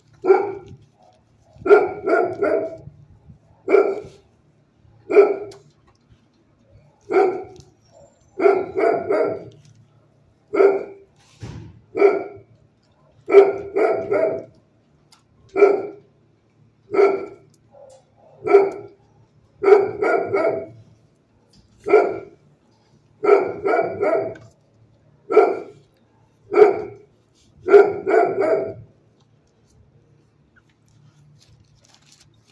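A dog barking repeatedly and loudly, a single bark or a quick run of two or three barks about every second or two, without letting up.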